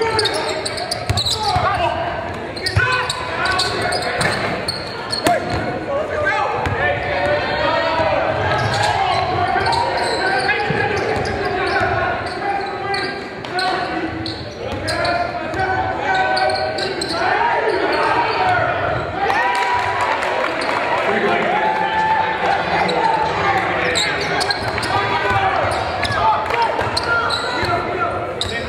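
A basketball being dribbled on a hardwood gym floor, with indistinct voices from players and crowd echoing in a large hall.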